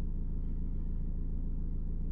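Steady low road and engine rumble heard from inside a moving van's cabin.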